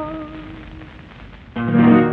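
The end of a sung tango. The singer's last held note fades away over a faint hiss, and about one and a half seconds in the accompaniment strikes a loud final chord that rings out and dies away.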